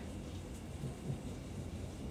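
Quiet background room tone: a faint, steady low rumble with light hiss and no distinct event.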